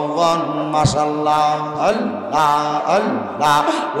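A man's voice chanting a devotional chant in long, drawn-out melodic phrases, the held notes sliding up and down in pitch.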